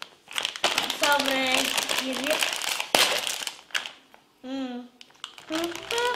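Plastic snack bag crinkling as it is handled and pulled open, with voices over it.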